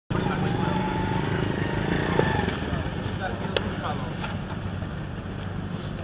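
Outdoor cattle-market ambience: distant voices over a steady low hum, with one sharp click about three and a half seconds in.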